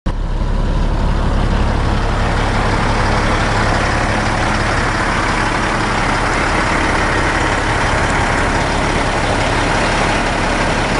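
Caterpillar C15 diesel engine of a 2007 Peterbilt 386 day cab idling steadily. It is a low rumble with a steady hiss over it, strongest in the first couple of seconds.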